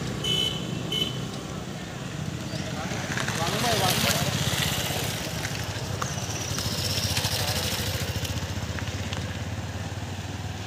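Motorcycle engines running steadily on the road, with people talking nearby.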